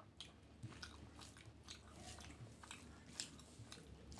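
Close-miked eating of rice and curry: faint, irregular wet clicks and smacks of chewing, a few a second.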